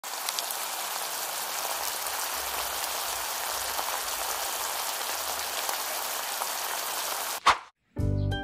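Shredded cabbage and corned beef simmering in a wok of broth: a steady bubbling hiss flecked with small crackles. Near the end a brief loud burst cuts in, and then the sound drops out.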